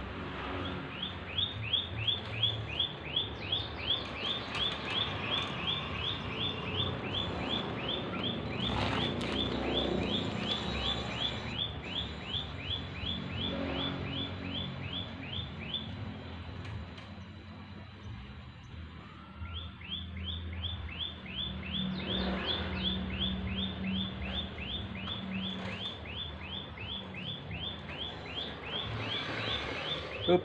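A bird calling over and over, a short high chirp dropping in pitch about three times a second, in two long runs with a pause of a few seconds between them.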